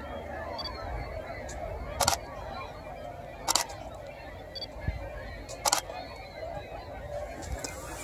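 Pentax DSLR shutter firing three separate single shots, about two, three and a half and nearly six seconds in, each a quick double clack, over faint outdoor background noise.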